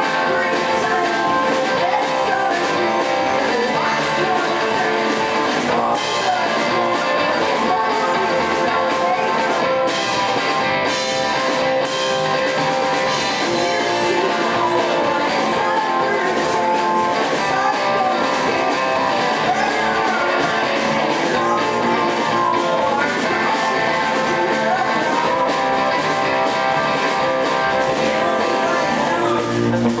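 Live rock music: a singer's voice over a strummed electric guitar, loud and continuous.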